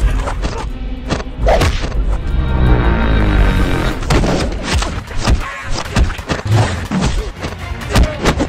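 Fight sound effects: a series of sharp punch and kick impacts and thuds, with a longer crash around the middle as a man is knocked onto a table, over music with a steady bass.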